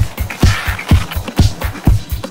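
Electronic dub techno track: a four-on-the-floor kick drum at about two beats a second, with hi-hats between the kicks and a hissing swell of sound about half a second in.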